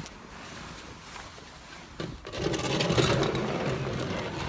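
Handling noise from a phone camera being moved about close to the microphone: soft rustling at first, then a click about two seconds in and louder scraping and rustling.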